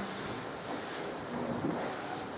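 Low, steady room noise of a hall with a seated audience, with no distinct events.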